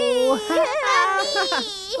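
Teletubbies' high-pitched, baby-like voices making wordless excited oohs and squeals, gliding up and down in pitch, with one long swooping 'ooo' near the end.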